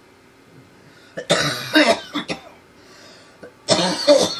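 A person coughing: a bout of several quick coughs about a second in, and another bout starting near the end.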